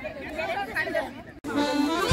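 Several people chatting on an open field, cut off abruptly about 1.4 s in, after which instrumental music with held notes begins.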